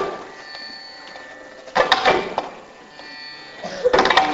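Carnatic classical concert music: sustained steady tones under clusters of sharp percussion strokes that come about every two seconds.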